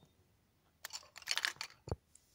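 Handling noise from a phone camera being repositioned: a short run of small clicks and rustles about a second in, then one sharp click near the end.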